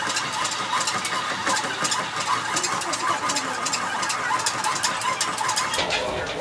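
A compact flat treadmill running under a person walking on it: a steady motor and belt noise with quick, regular footfalls on the belt.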